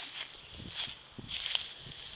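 Footsteps through dry leaf litter and grass, a few uneven steps with the rustle of leaves underfoot.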